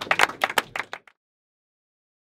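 A small crowd clapping in quick, separate hand claps, answering a call to make some noise. The clapping cuts off abruptly about a second in, leaving dead silence.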